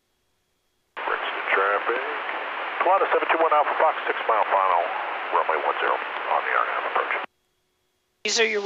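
A voice transmission over the aircraft's VHF radio, thin and narrow-band, heard through the headset audio feed. It starts about a second in and cuts off suddenly about a second before the end, with silence around it.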